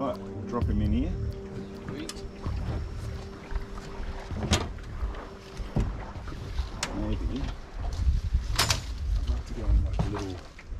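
Knocks and bumps on an aluminium dinghy's hull as people move about in it, the two loudest about four and a half and eight and a half seconds in. A steady hum fades out about halfway through, and there are brief indistinct voice sounds.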